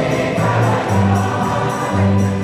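An accordion and a guitar-led rondalla play a lively song with a steady beat of about three strokes a second, while a choir sings along.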